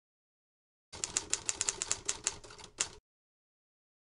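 Typewriter keys clacking in a quick run of about a dozen strikes, starting about a second in and stopping abruptly near three seconds, with one last harder strike set apart at the end.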